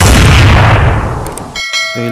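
Edited-in sound effects: a loud boom hit that dies away over about a second and a half, then a short bell-like chime near the end, matching the channel's animated logo and subscribe-bell overlay.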